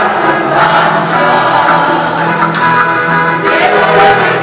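Small amateur mixed choir, mostly women's voices with a man's, singing together from sheet music.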